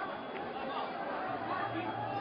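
A large crowd of people talking and shouting at once, many voices overlapping into a continuous babble.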